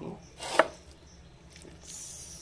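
A spatula stirring thick white-sauce pasta in a frying pan, with one sharp knock against the pan about half a second in and a soft scrape near the end.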